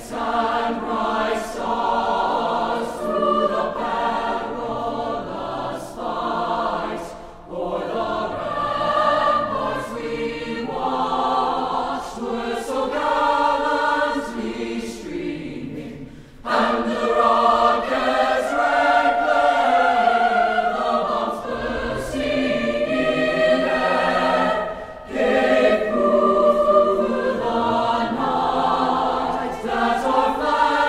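A choir singing held notes in phrases, with short breaths between phrases about seven, sixteen and twenty-five seconds in.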